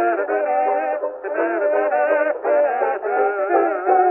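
Kazoos buzzing a wavering melody in harmony over banjo on a 1924 Edison Diamond Disc acoustic recording. The sound is thin, with no deep bass and no high treble.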